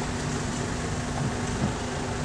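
Steady engine and running hum of a tour shuttle vehicle, heard from on board as it drives slowly along.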